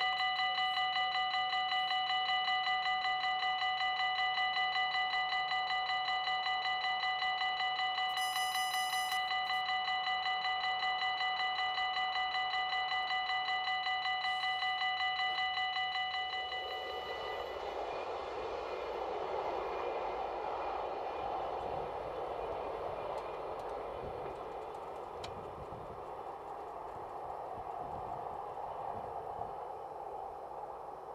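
Level-crossing warning bell ringing rapidly and steadily, stopping a little over halfway through; a diesel multiple-unit train then approaches and passes, a steady rushing rumble of engine and wheels.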